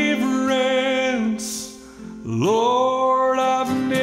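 A man singing a gospel song with long held notes, accompanying himself on a strummed acoustic guitar. One sung phrase dies away about a second in and the next begins a little after two seconds.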